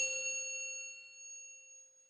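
A single bell-like chime struck once, ringing out in a few clear tones and fading away over about two seconds: an intro sting for a logo reveal.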